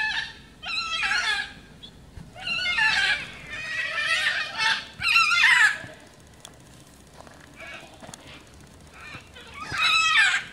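A run of loud, high, wavering animal calls, several in close succession over the first six seconds and one more near the end.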